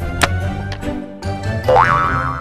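Background music with a sharp click a quarter-second in and a rising, springy boing sound effect near the end.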